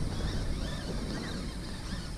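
Wind rumbling on the microphone, a steady low noise.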